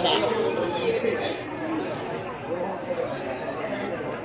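Background chatter of many overlapping voices of diners in a busy restaurant, running steadily.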